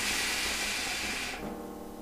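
A long draw on a hookah through an ice-cooled mouthpiece and hose: a steady airy hiss that stops about a second and a half in.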